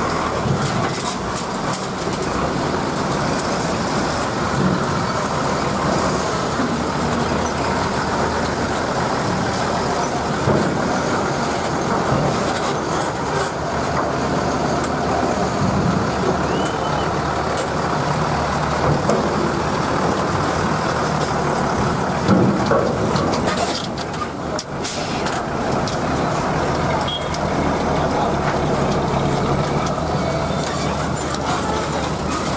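Loaded trucks driving past one after another, their diesel engines running loudly and steadily, with a few short clanks or hisses about three-quarters of the way through.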